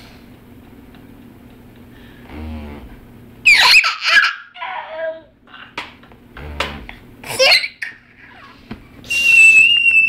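A toddler laughing and squealing in short high-pitched outbursts a few seconds in and again later, ending in a long held high squeal near the end. Under it, the steady low buzz of a handheld electric back massager running.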